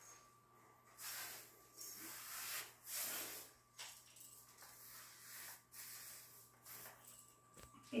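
Paintbrush on an extension pole being stroked along a painted wall: a series of soft swishing strokes, the first three louder and the later ones fainter.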